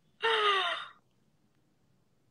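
A woman's single breathy vocal exclamation, falling in pitch and lasting under a second, with no words in it.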